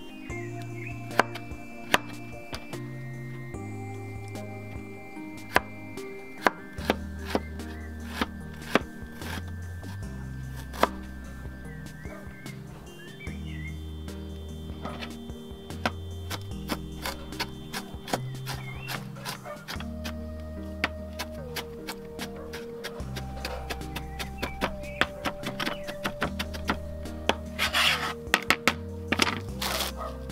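Kitchen knife chopping fresh ginger on a plastic cutting board: sharp, irregular knocks of the blade striking the board, with a quick flurry of chops near the end. Background music plays steadily underneath.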